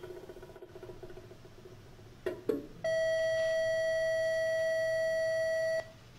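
A faint ringing tone dies away, then two sharp clicks and a loud, steady electronic beep held for about three seconds that cuts off suddenly.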